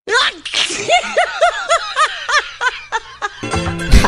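High-pitched laughter: a quick run of short rising-and-falling 'ha' bursts, about four a second, that stops about three and a half seconds in.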